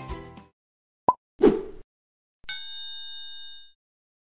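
Music fading out, then subscribe-button animation sound effects: a short click about a second in, a pop, and a bell ding that rings for about a second.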